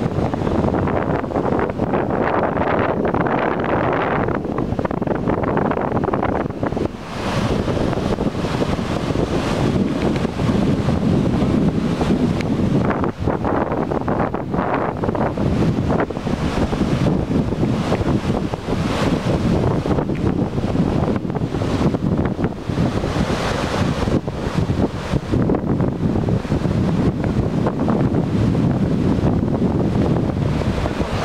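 Steady wind buffeting the microphone, mixed with the rush of floodwater surging through a breach in a road embankment.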